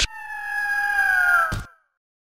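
A bird-of-prey screech sound effect for a logo sting: one long, clear cry falling slightly in pitch, struck in by a short hit at the start. A second hit comes near the end as the cry dies away.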